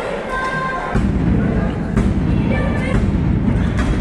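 Crowd voices and music in a large hall, with a thud on the wrestling ring's canvas about two seconds in as the wrestlers grapple on the mat.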